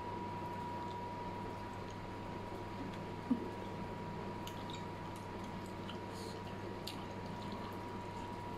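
Faint wet mouth sounds of someone chewing fried noodles, a few soft clicks and smacks over a steady electrical hum with a thin high tone, with one short louder smack about three seconds in.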